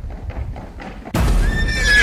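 A horse's hooves tapping lightly on a wooden board, then about a second in a loud horse whinny breaks in suddenly, wavering and falling in pitch.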